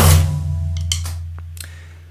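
The last cymbal and bass-drum hit of a drum pattern played on an electronic drum kit, ringing out and fading steadily away, with a few faint small clicks partway through.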